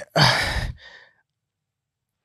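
A person's deep sigh, a breath out lasting about half a second, followed by a fainter breath.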